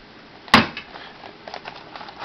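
Cardboard toy package handled on a wooden table: one sharp knock about half a second in as the box strikes the tabletop, then faint light taps and rustling as it is turned over.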